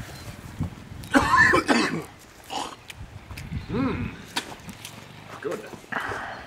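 A man coughing and clearing his throat in a few short bouts, after bouts of vomiting.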